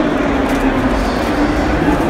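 Loud, steady din of a crowded indoor hall: indistinct crowd chatter mixed with a constant low hum.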